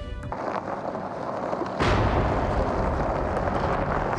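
Dramatic background music score that suddenly grows louder and fuller about two seconds in.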